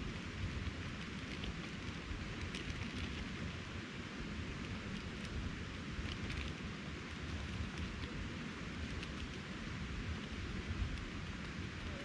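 Backpacking canister stove burner running steadily under a pot of cooking noodles, an even hiss with a few faint ticks.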